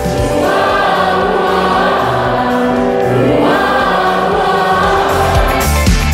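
A school choir of mixed boys' and girls' voices singing together in sustained phrases, a second phrase beginning a little past halfway.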